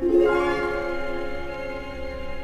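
Orchestral music from a vinyl record: the orchestra strikes a new chord at the start and holds it.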